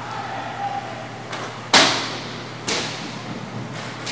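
Roller hockey sticks and puck striking: four sharp cracks that echo around the indoor rink. The loudest comes just under two seconds in.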